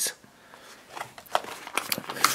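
Plastic blister packaging of a toy being handled and opened: a few sharp clicks and crinkles in the second half, after a quiet first second.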